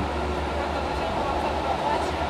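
Steady low background hum and noise with no speech, like ventilation or room noise.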